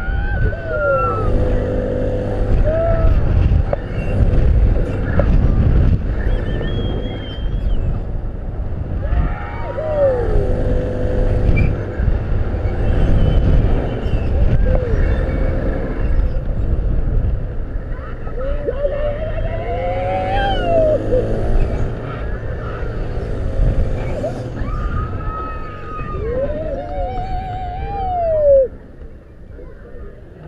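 Riders on a spinning thrill ride whooping and screaming in long rising-and-falling cries, over a steady rush of wind on the microphone from the ride's motion. The wind rush drops away sharply near the end.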